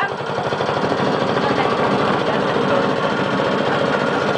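Small boat's engine running steadily under way, a rapid, even chugging.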